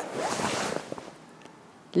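Swish and rustle of a cotton karate gi as a face block is thrown, a short hiss of fabric lasting under a second.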